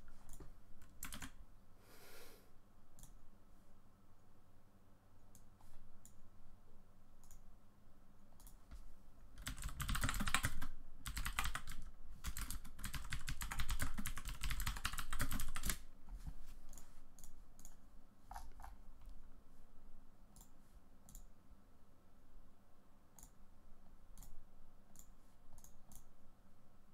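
Computer keyboard typing in a dense burst of several seconds around the middle, with scattered single mouse and key clicks before and after it.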